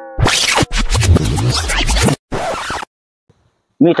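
A record-scratch sound effect of the kind edited into comedy videos, lasting about two seconds. It starts under the tail of a falling tone and is followed by a short hiss, then a second of silence.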